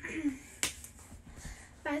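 One sharp, very short click or snap about two-thirds of a second in, between bits of speech.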